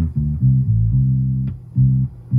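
Electric bass guitar, a G&L L-1000 recorded direct through a DI box, played back soloed through GarageBand's multiband compressor. It plays a line of separate low plucked notes, with a short gap about three quarters of the way through.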